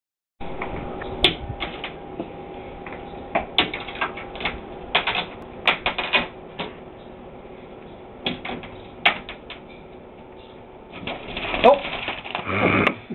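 Irregular sharp clicks and taps of small hard objects on a desk, some in quick clusters, over a faint steady hum. A short voice sound with a bending pitch comes near the end.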